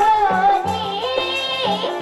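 A Nepali folk song: a single voice sings long, wavering held notes over a repeating low drum beat.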